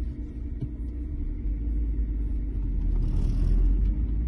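Low, steady rumble of a car's engine and road noise, heard from inside the cabin as the car moves slowly; it grows a little louder near the end.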